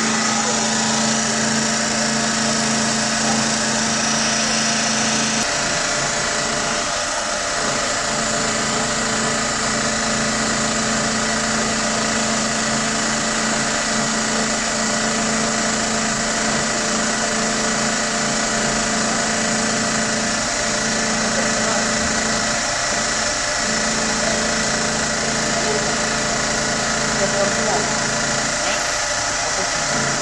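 Metal lathe running steadily, boring out an aluminium motorcycle engine crankcase with a boring bar; the motor and gearing give a constant hum with several steady tones.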